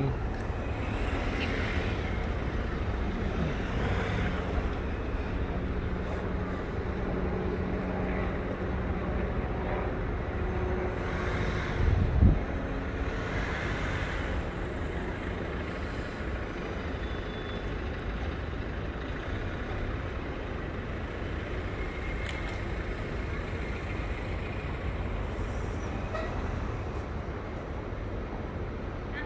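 Steady city traffic rumble from passing vehicles, with one brief louder low thud about twelve seconds in.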